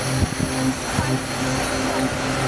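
Vehicle engine hum and road noise heard from inside the cabin on a rough road, with a few jolts and knocks about a quarter second in and again at about one second.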